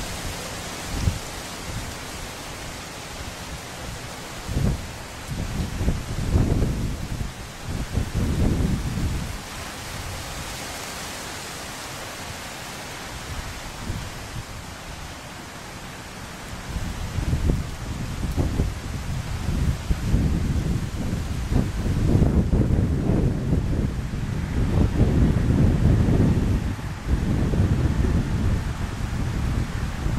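Wind buffeting the microphone in irregular low rumbling gusts, a few near the start and heavier through the second half, over a steady background hiss.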